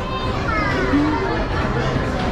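A child's high voice calling out with falling pitch, over background chatter and music on a moving carousel.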